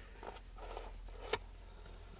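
Cardboard pizza box lid being opened by hand: faint rustling and scraping of cardboard, with one sharp click a little over a second in.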